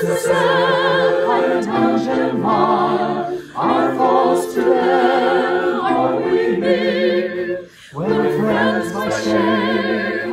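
Mixed choir of men's and women's voices singing unaccompanied in parts, with vibrato on held notes, its singers recorded separately and combined as a virtual choir. The singing breaks briefly between phrases about three and a half and eight seconds in.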